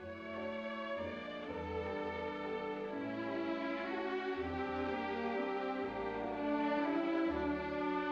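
Orchestral music led by violins, with sustained melody notes over separate low bass notes that come and go.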